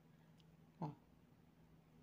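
Near silence: quiet room tone with a faint steady low hum, broken once a little under a second in by a single short spoken syllable.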